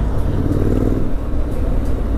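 Motorcycle engine, a 2017 Triumph Street Scrambler's 900 cc parallel twin, running steadily under way, with wind rushing over the camera microphone.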